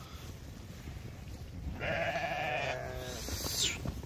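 A sheep bleats once, a wavering call lasting about a second, starting near the middle, over the low rumble of the moving flock; a brief rising hiss follows near the end.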